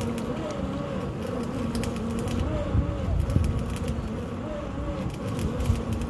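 Truck-mounted borewell drilling rig running, its engine giving a steady drone with irregular clicks and a few louder knocks about halfway through and near the end.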